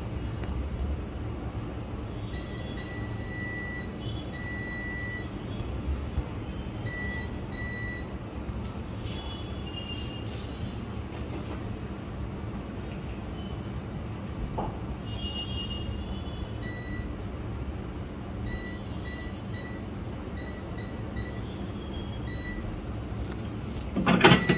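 Hot air rework gun blowing steadily through its nozzle onto a phone circuit board, reflowing the solder under a newly fitted eMMC chip. Faint short high-pitched beeps come and go over the steady air noise.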